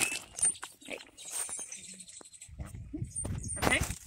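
Hands digging into and lifting loose, root-filled potting soil in a plastic tote: soft scattered crackles and rustles, with a few short high chirps in the background.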